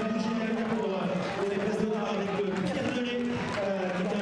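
A man's voice talking continuously over steady background crowd noise.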